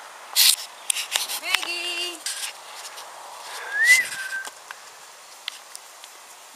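A short whistle-like call: one clear note that rises and falls about two-thirds of the way through. An earlier, lower call comes a couple of seconds before it, and a sharp rustle or click comes near the start.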